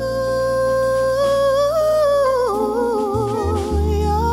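Female gospel vocalist singing without words, holding one long note, then breaking into wavering melismatic runs about two and a half seconds in. Upright bass notes sound underneath.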